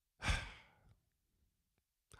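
A man sighs once into a handheld microphone held at his mouth: a breathy exhale of about half a second that fades out.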